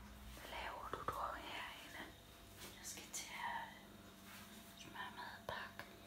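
Quiet whispered speech.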